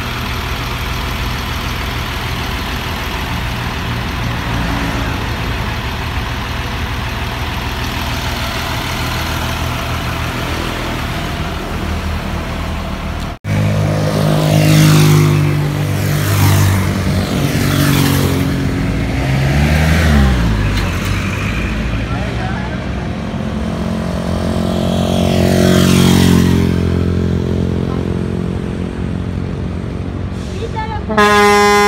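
Road traffic in a slow queue: motor vehicle engines idling steadily. About 13 seconds in the sound cuts to a closer, louder engine running, its pitch dipping and rising again, while vehicles pass with sweeping engine notes.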